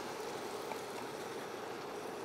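Ketchup heating in a frying pan on an induction hob while being stirred with a spatula: a steady, quiet hiss.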